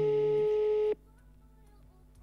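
Telephone ringback tone from a mobile phone held up to a microphone as a call is placed: one steady beep lasting about a second.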